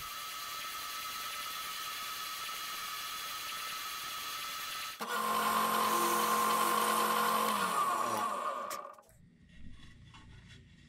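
A spindle sander runs steadily while a guitar headstock is shaped against its drum. About halfway through, a louder drill press takes over, boring the tuner holes in the headstock. Near the end its motor winds down, falling in pitch, and stops.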